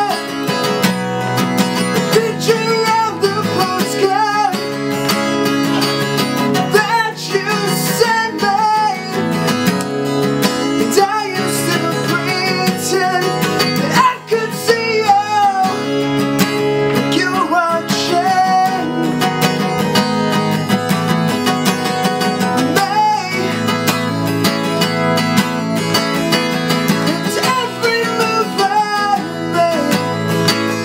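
A man singing while strumming a dreadnought acoustic guitar, a solo live acoustic performance with the voice and guitar together throughout.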